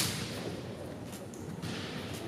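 A single sharp slap from the wushu performers' movements at the start, echoing in the hall, followed by faint footfalls and the swish of uniforms.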